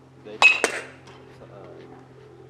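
Metal baseball bat hitting a pitched ball: a sharp, ringing ping about half a second in, followed a fifth of a second later by a second sharp crack.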